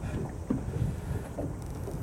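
Steady low wind rumble buffeting the microphone on an open boat, with a few faint short sounds above it.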